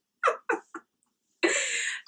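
A woman laughing: three short giggles, then a longer, breathy laugh near the end.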